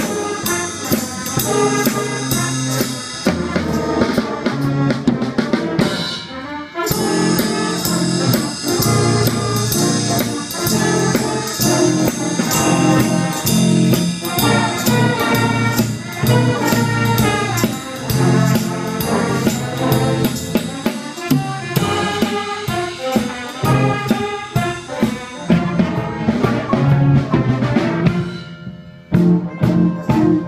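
A school jazz band playing: a trumpet and trombone section over a drum kit with cymbals. Near the end the music drops away briefly.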